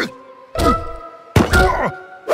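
Cartoon sound effects: two heavy thuds about half a second and a second and a half in, each trailing off in a falling tone.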